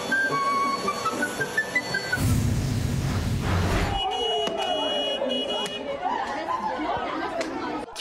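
Light melodic background music for about two seconds, then a loud rushing noise lasting about two seconds. After that comes a jumble of people shouting and chattering, heard over the sound of a street brawl.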